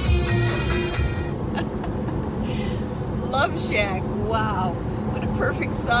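Steady road noise inside a moving car's cabin. Music ends about a second in, and a woman's voice comes in briefly past the middle.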